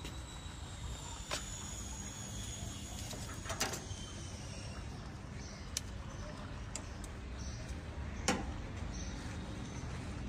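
Quiet outdoor background: a steady low rumble with a few sharp clicks spread through it, and a faint high steady tone in the first half.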